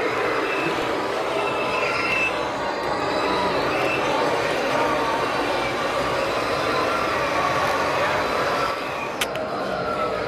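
A 1/16 scale Hooben radio-controlled Abrams M1A2 SEP tank driving: the steady whir and rattle of its drive motors, gearboxes and tracks, mixed with the simulated engine noise of its digital sound unit. A single sharp click comes about nine seconds in.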